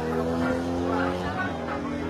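A vehicle engine running at steady revs, its note shifting slightly partway through.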